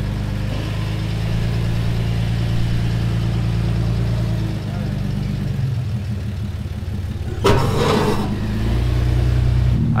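A Jeep Cherokee XJ's engine running at low, steady revs as it crawls over steep slickrock. A short, louder burst of sound comes about seven and a half seconds in.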